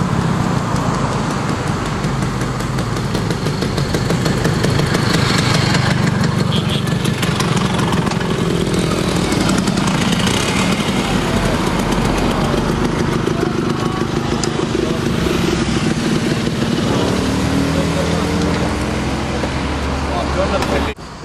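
Several Vespa motor scooter engines running as the riders ride past and pull up, a loud, steady buzzing drone. Voices are mixed in.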